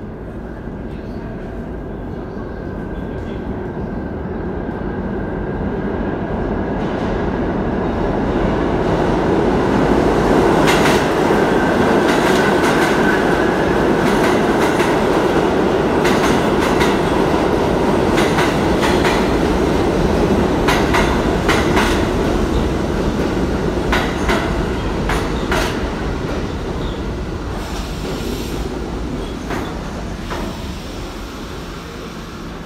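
Subway train passing through the station. Its rumble builds over the first ten seconds or so, with a thin high squeal early on, then a long run of clicking wheels over rail joints before it eases off near the end.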